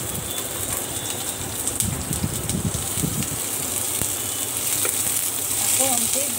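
Chopped onions sizzling in hot oil with cumin seeds in a frying pan: a steady hiss that grows a little louder toward the end.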